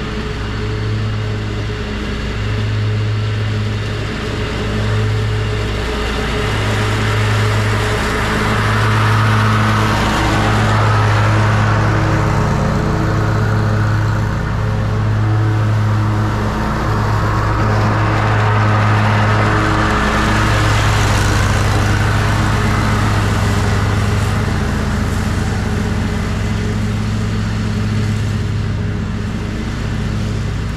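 Toro zero-turn mower running steadily under load, its engine droning with the rush of the mower blades mulching dry leaves; the rushing swells in the middle.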